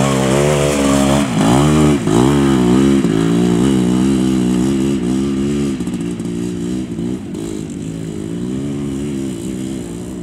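Classic off-road motorcycle engine revving up and down as the bike pulls through deep mud close by, the pitch dropping and rising again several times in the first few seconds. It then holds a steadier note and fades as the bike rides away.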